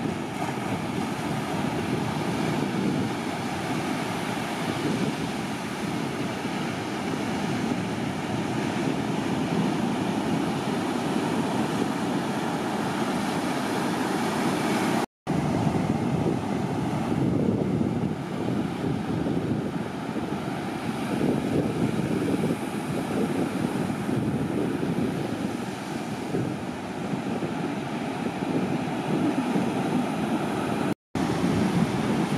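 Continuous wash of breaking ocean surf with wind on the microphone, an even, low-heavy rush. It breaks off for an instant about halfway through.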